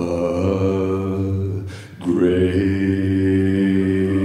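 Mixed-voice a cappella group singing long-held chords over a steady bass note. The chord breaks off briefly near the middle, then the closing chord of the song is held, with a high voice sustaining a note on top.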